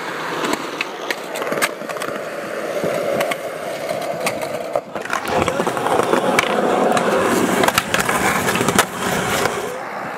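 Skateboard wheels rolling on smooth concrete, a steady rolling rumble, with scattered sharp clicks and knocks from the board hitting the ground. The sound breaks briefly about halfway and then runs on fuller and lower.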